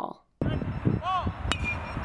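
Live sound of a beep baseball practice: two short shouted calls from players, and a single sharp crack about halfway through.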